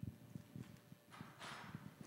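Faint footsteps on a wooden floor, a soft, irregular series of low knocks, with a brief faint rustle in the second half.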